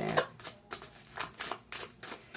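A deck of oracle cards being shuffled by hand: an irregular run of short, crisp card clicks and flicks.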